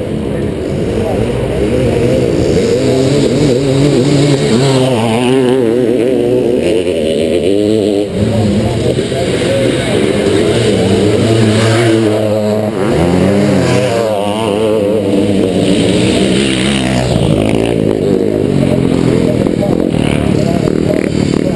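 1981 Can-Am MX-6B 400's single-cylinder two-stroke engine racing under load, its revs rising and falling again and again through the run, heard close up from a camera mounted on the bike.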